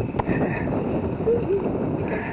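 Lake water splashing and sloshing right at the microphone, stirred by a golden retriever paddling its front legs beside a swimmer, with a single sharp knock near the start.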